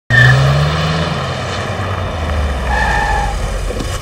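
Mini Countryman car driving in and pulling to a stop, its engine note falling as it slows. Two short high squeals sound over it, one at the very start and one near the end.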